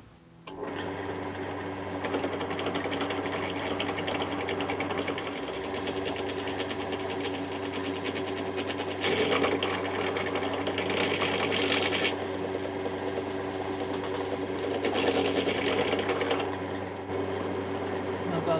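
Benchtop drill press starting about half a second in and running steadily, its twist bit boring into a wooden block. The cutting gets louder in two spells, near the middle and again toward the end, as the bit is fed down to a set depth stop so that its tip just breaks through the far side.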